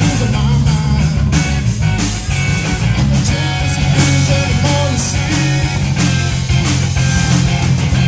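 Live Texas blues-rock trio playing at full volume: amplified electric guitar over electric bass and drums.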